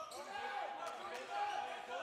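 A basketball being dribbled on a hardwood court, with sneakers squeaking in short, high squeals, in an echoing arena.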